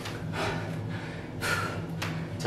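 A man breathing hard, two heavy breaths about a second apart, winded right after a set of slow burpees.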